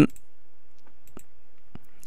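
Two faint computer mouse clicks, a little over half a second apart, as a menu command is chosen, over a low steady hum.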